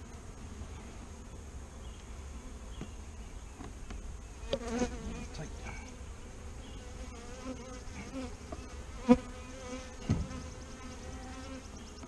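Saskatraz honey bees buzzing around an opened hive, a steady wavering drone, with a few short wooden knocks as frames are set back into the hive box, the sharpest about nine seconds in.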